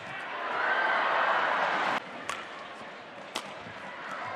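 Arena crowd noise swelling for about two seconds, then cut off suddenly. It is followed by two sharp cracks of badminton rackets striking the shuttlecock, about a second apart.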